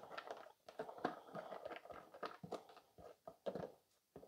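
A run of faint, quick, irregular scrapes and taps: a silicone spatula scraping chopped onion out of a plastic container into a slow cooker's crock.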